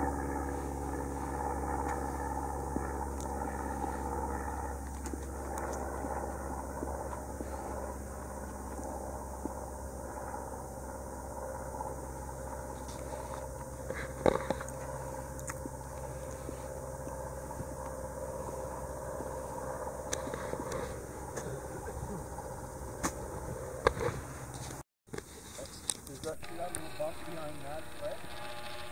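A propeller airplane flying over, a steady engine drone with several held tones that slowly fades. There are a few sharp clicks partway through, and the sound cuts off abruptly about 25 seconds in.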